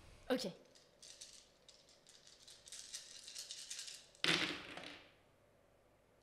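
A handful of six-sided dice rattling as they are shaken in the hand for about three seconds, then thrown about four seconds in, clattering and rolling to a stop on the gaming mat.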